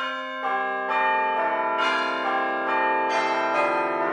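Outro music of ringing, bell-like chimes: notes struck one after another about twice a second, each left to ring on under the next.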